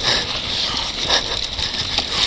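A downhill mountain bike running fast down a rough dirt trail: tyres rolling over loose soil and stones, with frequent short clicks and rattles from the bike over the bumps and steady wind rumble on the camera's microphone.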